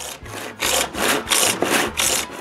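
Handsaw cutting through a 6-inch PVC dust collector pipe by hand, in quick back-and-forth strokes of about three a second.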